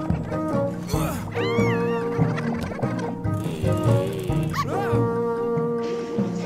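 Cartoon score music with steady held notes, with a character's high, swooping wordless vocal cries, once about a second and a half in and again near five seconds.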